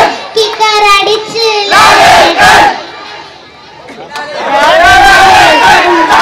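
Crowd of fans shouting and chanting together in loud bursts. The voices drop away about halfway through, then rise loudly again near the end.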